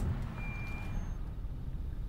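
Steady low rumble inside a moving car's cabin, with one faint high-pitched tone lasting about half a second near the start.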